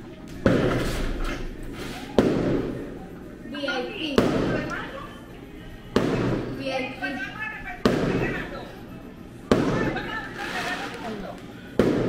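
Fireworks going off outside: a sudden bang about every two seconds, seven in all, each trailing off in a long fading rumble.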